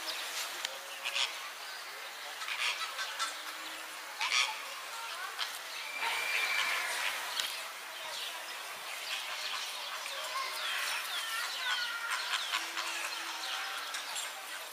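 Small birds chirping and calling outdoors: many short, scattered chirps over a steady background of outdoor noise.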